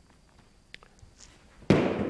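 The far end of a vaulting pole snapping down onto the floor: one sharp crack about a second and a half in, followed by a short fading ring. This crack is the noise that gives the snap plant drill its name, marking the pole being planted.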